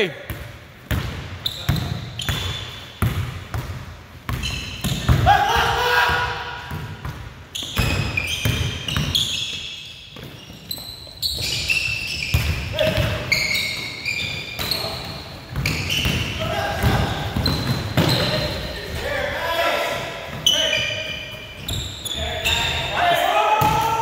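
A basketball being dribbled on a hardwood gym floor, with repeated bounces, sneakers squeaking and players' voices calling during play.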